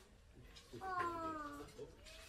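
European wildcat giving a single meow-like call, a little under a second long and falling slightly in pitch, about a second in.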